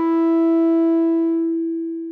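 A Korg Monologue monophonic analogue synthesizer holding a single bright note that rings on and slowly fades, its upper overtones dying away first.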